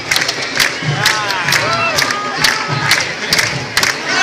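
Candombe drums played in a steady beat, sharp stick strikes about twice a second over low thuds, with crowd voices shouting and calling over the drumming.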